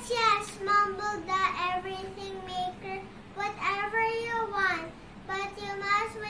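A young girl singing in a series of phrases with long held notes and short pauses between them.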